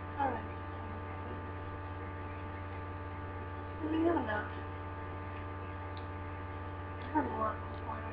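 Steady electrical mains hum with a buzz on the recording, broken three times by short murmured voice sounds: near the start, about four seconds in, and about seven seconds in.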